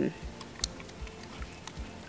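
Faint, scattered small clicks and ticks over a low rumbling background, with no steady or pitched sound.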